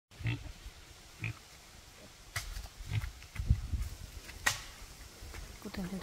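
Footsteps through dry leaf litter, heard as a few short low thuds, with two sharp clicks, one in the middle and one later. A voice starts right at the end.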